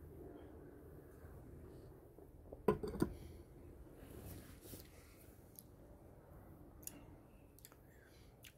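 A stemmed beer glass set down on a tabletop a little under three seconds in: two sharp knocks close together, with a few faint ticks later.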